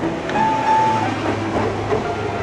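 A heavy vehicle passing on the street, giving a steady low rumble and noise, with one short steady high tone a little after the start.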